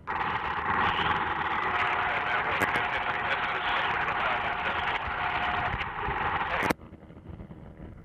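Steady hiss of an open radio channel that switches on abruptly and cuts off with a click about six and a half seconds in, over a low rumble.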